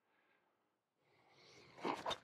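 Near silence, then in the last half second the swish of a golf driver's fast downswing builds up, running into the sharp crack of the clubface striking the ball right at the end.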